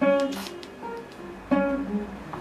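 Classical guitar playing a plucked right-hand finger exercise, with a loud accented note at the start and another about a second and a half in, softer notes between: one finger (the index) is being accented.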